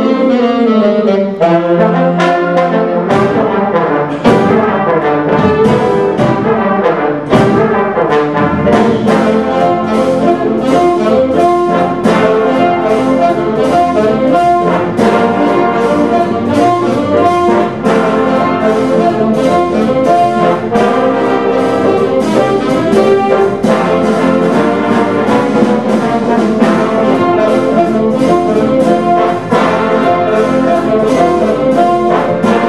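Big jazz band playing a swing tune: saxophones, trumpets and trombones over piano, bass and drums. A falling run opens it, then the horns ride a steady swing beat.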